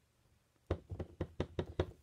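A rubber stamp on a clear acrylic block tapped quickly and repeatedly on an ink pad to re-ink it: a run of about ten soft knocks, some eight a second, starting less than a second in.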